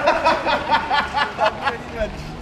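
A man laughing heartily, a run of about eight quick, evenly spaced bursts of laughter that fade toward the end.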